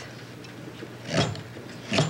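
Kitchen knife cutting potatoes on a wooden cutting board: two sharp knocks of the blade on the board, one about a second in and one at the very end, over a low steady hum.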